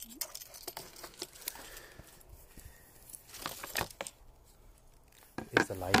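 Rustling and crinkling of a bag being handled, with a few light knocks as a Ouija board is set down on a wooden tabletop.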